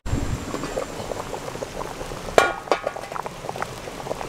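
Thick vegetable soup boiling hard in a stainless steel pot over a campfire: continuous irregular bubbling and popping of the thickened broth. A single short clink sounds about two and a half seconds in.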